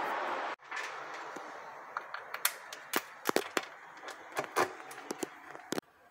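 A short stretch of louder hiss that cuts off about half a second in, then a faint hiss with a scatter of irregular sharp clicks, a few of them louder than the rest.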